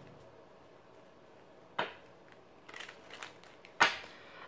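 A tarot deck being handled to draw a clarifier card: a sharp card snap about two seconds in, a few light ticks, then a louder snap near the end.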